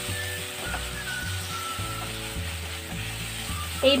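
Dried Bombay duck and onion-tomato masala sizzling in oil in a nonstick kadai as a spatula stirs and mixes it. Steady background music plays under the frying.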